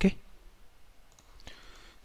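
A man says 'okay', then quiet room tone with a few faint clicks.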